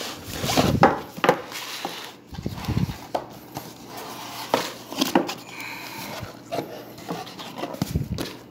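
Cardboard headphone packaging being handled: an inner box slid out of its printed sleeve and opened, with irregular scrapes, rubbing and light taps.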